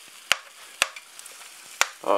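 A minced-meat cutlet and potatoes frying in a pan: a steady faint sizzle, broken by three sharp clicks, about a third of a second in, near the middle and near the end.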